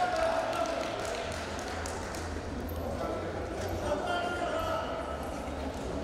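Indistinct voices echoing in a large sports hall, over a steady low hum.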